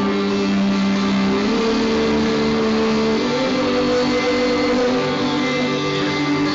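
Live acoustic guitar music with a melody of long held notes over it, the melody stepping up in pitch twice.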